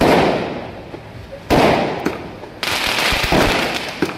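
Aerial fireworks going off: three loud bangs, at the start, about a second and a half in and about two and a half seconds in, each trailing off in a fading crackle.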